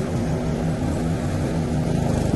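Westwood S1300 ride-on mower's engine running steadily as it drives, a loud, even drone heard close up from the driver's seat.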